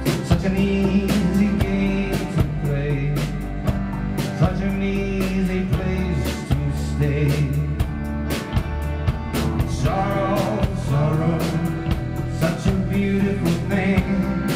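Live band playing: accordion, guitar and drum kit, with the drums keeping a steady beat.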